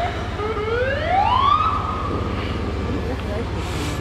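Emergency-vehicle siren wailing: its pitch sweeps up from about half a second in, holds high until about three seconds, then fades, over a low steady rumble.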